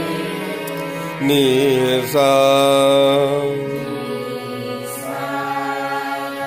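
Harmonium reeds sustaining a steady chord while a singer sings the sargam phrase "ni sa" in Raag Bhimpalasi. The voice comes in about a second in with a short wavering note, then holds a long, louder note for about a second and a half before the harmonium carries on alone.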